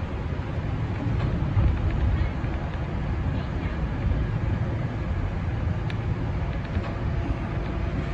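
Kintetsu 1400-series electric train running, heard from inside the front cab as it pulls away from a station: a steady low rumble of wheels and running gear, with a sharp click about six seconds in.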